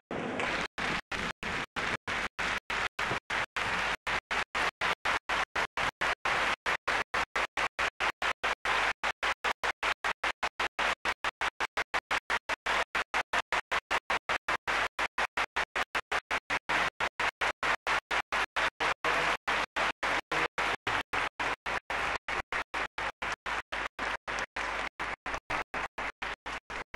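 Audience applauding, a steady wash of clapping, chopped by brief regular dropouts about three times a second.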